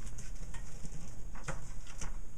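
Handling noise as a paperback book is moved aside, with a sharp knock about one and a half seconds in, over a steady low hum.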